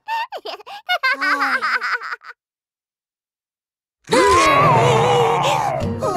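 Short, choppy cartoon giggles for about two seconds, then a pause of silence. About four seconds in comes a loud cartoon tyrannosaurus roar, falling in pitch over a deep rumble.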